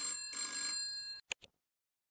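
A bell-ringing sound effect, like a telephone bell, rings twice in quick succession, followed by two short clicks.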